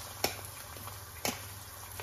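A knife tapping an egg's shell twice, about a second apart, to crack it over a frying pan, with the steady sizzle of eggs frying underneath.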